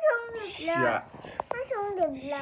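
Voices repeating the French word 'chat' (cat) in drawn-out, falling, meow-like tones, about three times.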